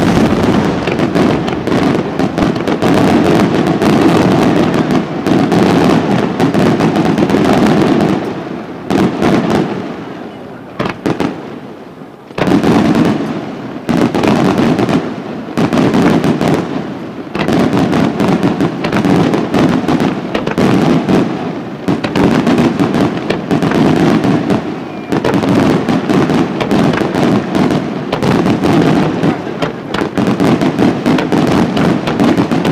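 A fireworks display: aerial shells bursting in a dense, rapid barrage of bangs and crackle. It thins out for a few seconds around the middle, then picks up again.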